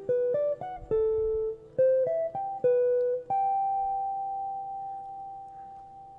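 Guild archtop guitar played as a climbing run of picked two-note intervals, combining thirds and sixths. A last interval is struck a little past the three-second mark and left to ring, fading slowly.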